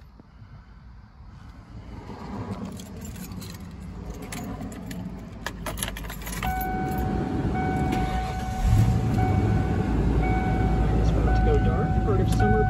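Keys jangle at the ignition of a 1995 Ford Bronco. About six seconds in a warning chime starts pulsing, and a few seconds later the V8 engine starts and settles into a steady idle.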